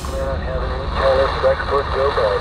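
Diesel semi-truck engines idling, a steady low rumble.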